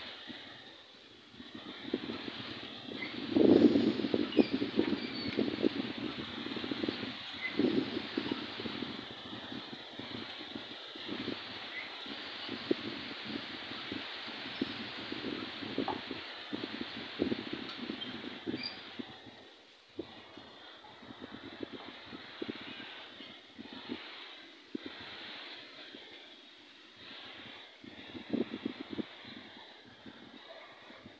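Outdoor ambience: a steady hiss with irregular low rumbles and knocks, loudest a few seconds in, and a few faint short bird chirps.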